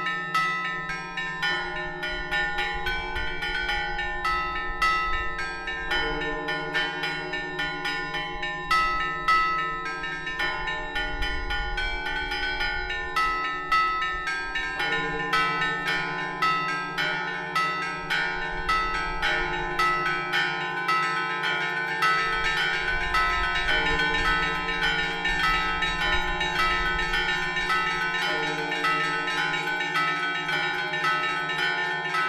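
Russian Orthodox church bells rung by one ringer on ropes in the Zaonezhsky (Karelian) style: rapid, rhythmic clanging of the small treble bells over the steady hum of deeper bells. The strokes grow denser through the second half.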